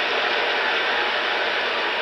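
Steady, even din of a baseball stadium crowd, heard through an old television broadcast.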